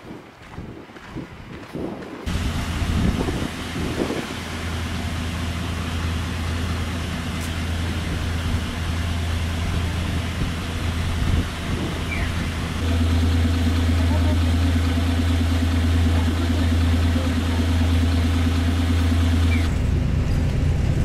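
Diesel city bus engine running with a steady low hum, first heard from the kerb as the bus waits at the stop. From about two-thirds of the way in it becomes a louder, steadier drone heard from inside the bus.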